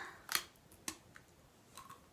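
A bite into a hard, stale iced sugar cookie: a sharp crunch about a third of a second in, a second snap near one second, then a few faint crunches of chewing.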